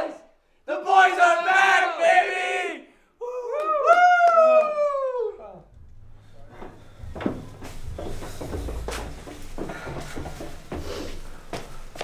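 Several men's voices whooping and cheering without words for about the first five seconds, the last whoop sliding down in pitch. After that it drops to a quieter low rumble with scattered clicks.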